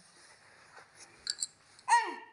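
Quiet room hiss with a few faint taps, then near the end a short, loud, high-pitched vocal sound from a toddler that falls in pitch.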